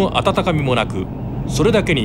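A voice speaking in Japanese, which the on-screen subtitles translate, over a low steady rumble.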